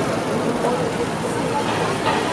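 Steady outdoor street background noise: traffic hum with faint, indistinct voices.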